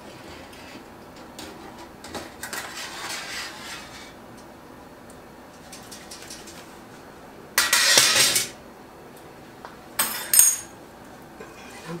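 Metal kitchen clatter as a wire canning rack is handled at a stainless sink and utensils are moved while finding a jar lifter. There is soft handling noise at first, then two loud bursts of clattering and clinking about eight and ten seconds in, the second ringing high.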